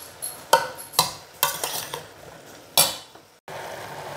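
Metal spoon stirring corn kernels and sliced mushrooms in a stainless steel pot, with several sharp clinks of the spoon against the pot's sides.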